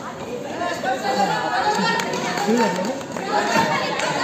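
Several voices talking and calling out at once: kabaddi players and onlookers chattering around the court, with some echo from the hall.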